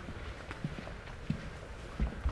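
A few faint, irregular footsteps on a hard floor.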